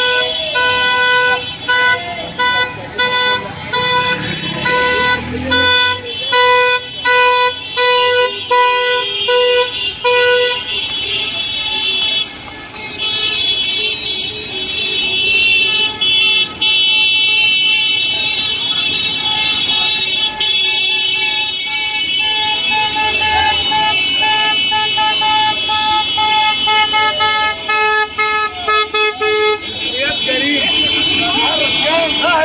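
Car horns honking over and over from a passing convoy of cars: a run of short, rapid toots for about the first ten seconds, then longer overlapping blasts from horns of another pitch, with quick toots again near the end. The honking is celebratory, from a car rally.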